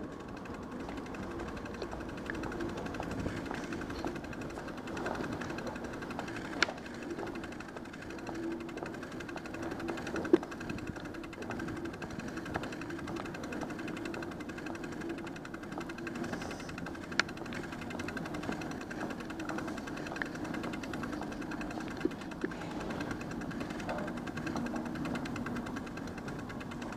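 Steady mechanical drone of an underground subway platform's ambience, broken by a few sharp clicks.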